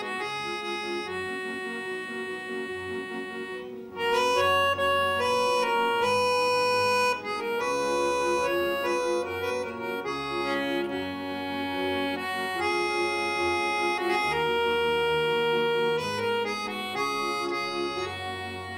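A small accordion playing a tune: held, reedy chords with a melody over bass notes, the notes changing every second or two. It gets noticeably louder about four seconds in.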